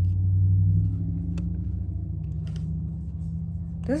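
Freezer running with a steady low hum, a little louder during the first second.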